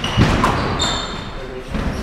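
Squash rally on a glass-backed court: a hard thud of the ball or a player's footfall just after the start, then rubber-soled court shoes squeaking on the wooden floor about a second in.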